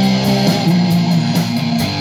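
Live rock band playing an instrumental passage between vocal lines: electric guitar and bass guitar over drums, with cymbals keeping a steady beat.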